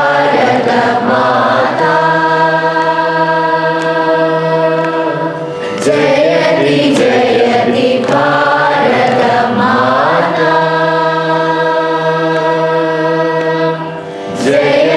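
A large group of voices singing together in unison: a Carnatic patriotic song in raga Kamas. Two phrases each move through the melody and then settle on a long held note, with a short breath between them.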